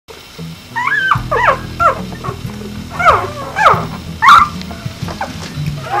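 Newborn Vizsla puppies whimpering and squealing: a run of short high calls, each sliding down in pitch, several in quick succession. Low, steady background music plays under them.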